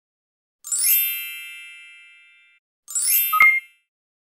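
Two glittery chime sound effects: the first rings out and fades over about two seconds, the second is shorter and ends in a sharp pop-like ding.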